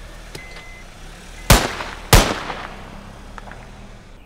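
Two loud, sharp bangs about two-thirds of a second apart, each trailing off briefly.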